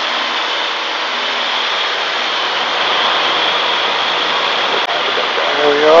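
Steady drone of a Piper Super Cub's engine and propeller mixed with wind rushing through the open cabin windows, heard inside the cockpit while the plane climbs. A brief click about five seconds in.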